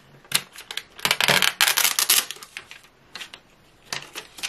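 A clear plastic wrapper crinkling and a plastic paint palette case clicking as a Derwent tinted charcoal paint pan set is handled. There is a sharp click, then about a second and a half of crackling, then a few light ticks.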